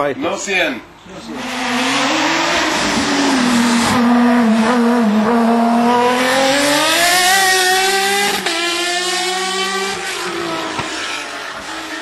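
Osella PA 27 hillclimb sports-prototype racing car passing at full throttle: its engine note builds as it approaches, climbs in pitch, breaks briefly with an upshift about eight and a half seconds in, climbs again and then fades as the car goes away up the course.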